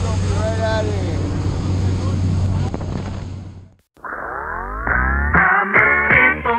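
Steady engine drone heard inside a small jump plane's cabin, with a voice speaking briefly about half a second in. The drone fades out a little before the midpoint, and music with a beat comes in about four seconds in.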